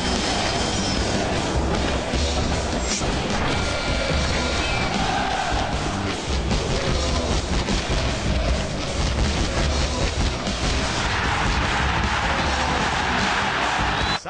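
TV sports programme opening theme: loud music with a pulsing heavy bass beat and crashing impact sound effects over the animated titles.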